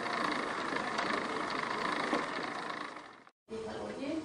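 A hand-turned wooden thread-winding wheel runs with a steady whirr as it winds thread from a large spool onto a small bobbin. The sound fades out about three seconds in, and after a brief silence a voice begins near the end.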